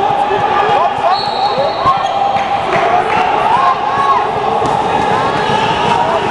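Indoor handball play: the ball bouncing on the court and sneakers squeaking in short chirps on the floor, over the echoing chatter and shouts of spectators in the gym.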